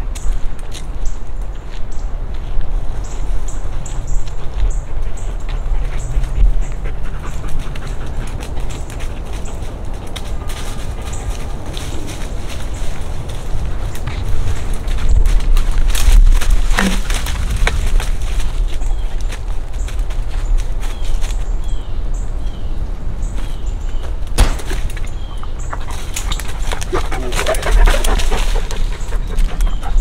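A dog searching through brush and leaf litter: leaves and twigs rustling and crackling and footsteps, with the dog panting. A heavy low rumble of wind and handling sits on the microphone throughout.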